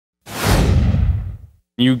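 Whoosh sound effect of an animated logo intro: one swell of rushing noise with a low rumble underneath, starting a quarter second in and fading out over about a second, the high end dying away first.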